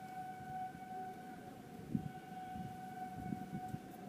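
A steady, unvarying tone like a distant siren, held for several seconds with a short break about halfway through, over soft handling noise and a sharp thump about two seconds in as hands press a vinyl rim-strip sticker onto a motorcycle wheel rim.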